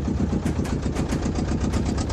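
Ferry boat's engine running loud and steady, with a rapid, sharp knocking beat.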